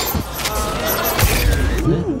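Film soundtrack of music layered with sound effects and a brief vocal sound from a character.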